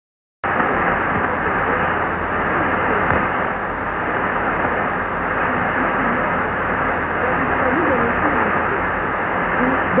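Shortwave AM reception of Radio Congo on 6115 kHz through a Kenwood TS-2000 receiver: a dense, muffled hiss of static starts suddenly about half a second in, with a weak voice faintly audible beneath it in the second half.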